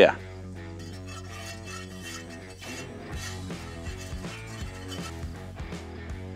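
Background acoustic guitar music, with a metal whisk stirring and lightly clinking in a cast iron Dutch oven as butter melts in it.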